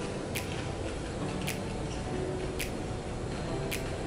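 Popcorn being chewed, quiet, with a few short crisp crunches about a second apart.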